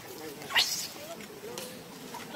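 A young macaque gives one brief, high-pitched squeal about half a second in, during a tussle with another monkey.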